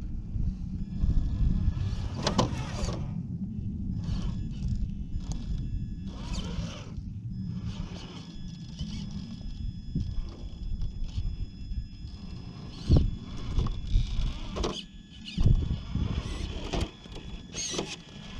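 Electric motor and geartrain of a scale RC rock crawler whining in short spurts as it creeps up and over a rock pile, with a few sharp knocks from the truck hitting the rocks, loudest about two thirds of the way through and again shortly after.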